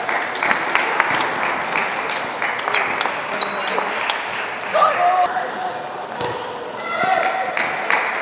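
Table tennis ball being hit back and forth in a rally: a run of sharp clicks as it strikes the bats and bounces on the table, ringing in a large hall.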